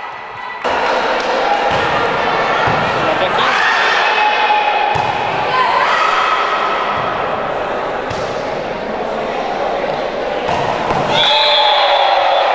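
Volleyball strikes and thuds ringing out in a reverberant gymnasium, a few separate hits over the rally, under a steady din of overlapping players' shouts and spectators' voices.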